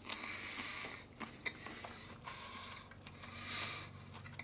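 Faint handling sounds of a shrimp platter as a shrimp is picked out: soft rustling with a few light clicks, and a brief swell of rustle near the end.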